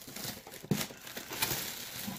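Cardboard box and plastic packing wrap rustling and crinkling as a boxed security camera is unpacked, with a sharper click about two-thirds of a second in.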